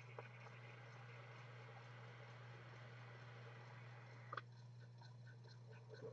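Near silence over a steady low electrical hum: a faint hiss of a long draw being pulled through a rebuildable dripping atomizer, fading out about four seconds in with a small click.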